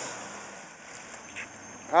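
Ford Explorer's 4.0-litre V6 easing off after being given too much gas. Its sound fades over about a second and then runs on low and steady.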